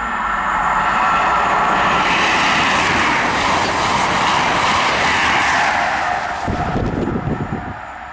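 InterCity 125 High Speed Train with Class 43 power cars passing at speed: a rush of wheel and air noise builds quickly, stays loud for several seconds as the coaches go by, then fades, with a burst of low rumbling near the end.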